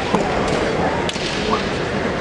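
Bamboo kendo shinai clacking against each other in a few sharp cracks as two fencers break from close quarters, over the steady noise of a large hall with short shouts.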